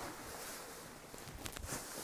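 Faint rustling of a large fabric sleeping-bag storage sack as it is picked up and handled, with a few soft clicks in the second half.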